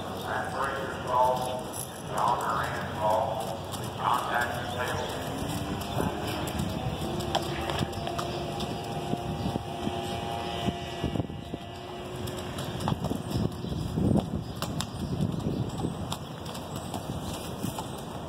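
Hoofbeats of a horse walking on packed dirt while being led in hand, irregular strikes that grow clearer in the second half, with a person's voice in the first few seconds and a steady hum in the middle.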